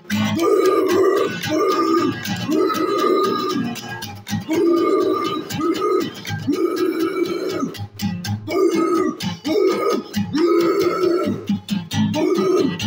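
Acoustic guitar strummed under shouted, wordless vocals, a hoarse yell about once a second.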